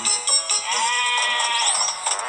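Animated Tigger plush toy playing its song through its built-in speaker: a wavering character voice singing over music, with a quick rising glide near the end.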